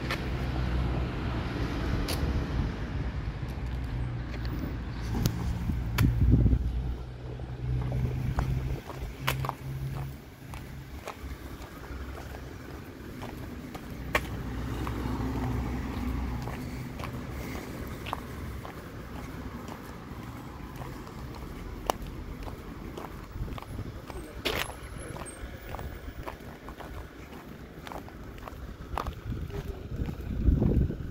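Street ambience: a motor vehicle's engine hums low and steady for about the first ten seconds, then fades into quieter distant traffic with scattered short clicks.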